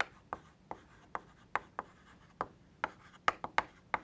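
Chalk writing on a blackboard: an irregular string of short, sharp chalk taps and strokes, about three a second.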